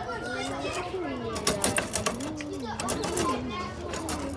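Children's voices talking and calling out, with several sharp clicks around the middle.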